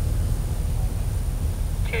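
Steady low rumble of background noise with a faint, constant high-pitched whine above it and no distinct event.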